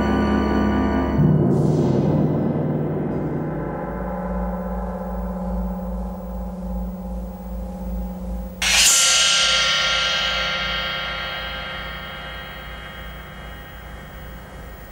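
Soundtrack music of struck gong-like metal: a sustained ringing chord, a strike about a second in whose low tone beats slowly as it rings, and a loud, bright strike past the middle that rings on and slowly fades.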